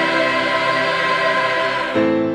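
A southern gospel choir singing in harmony, holding one long chord that is cut off at the end.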